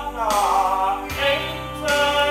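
A male crossover tenor singing in full, operatic voice rather than crooning into a microphone, over steady instrumental backing music. The sung line glides and swells, growing louder near the end.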